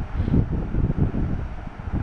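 Uneven, wind-like low rumble buffeting a close microphone, with no speech.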